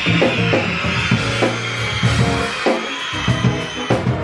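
Live band playing upbeat music: drum-kit hits in a steady beat over a bass line, with a crowd of children cheering and screaming over it in the first half.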